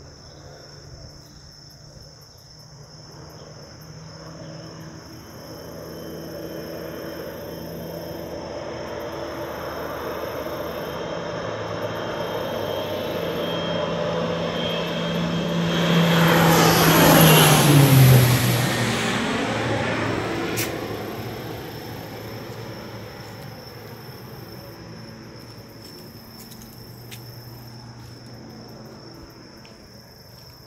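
Low-flying crop-duster airplane approaching and passing overhead. The engine builds for over fifteen seconds, is loudest just past halfway as its pitch drops sharply going by, then fades away. Crickets or other insects shrill steadily underneath.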